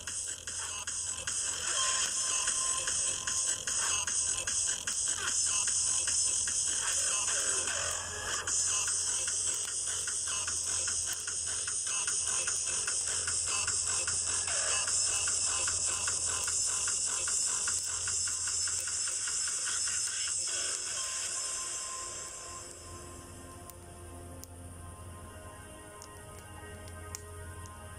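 Music with a steady beat, growing quieter and duller about 22 seconds in.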